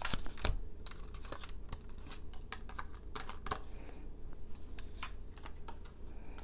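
Tarot cards being shuffled by hand: a run of light, irregular clicks and taps as the cards slap against each other.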